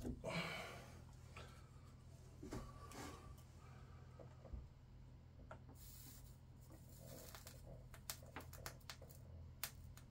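Faint handling noises: scattered small clicks and brief rustles from a hand working among the wiring and rails of an N-scale model railway, over a low steady hum. The clicks come more thickly in the second half.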